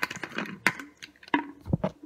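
A plastic water bottle's screw cap being twisted and worked open by hand, giving a few irregular plastic clicks and knocks.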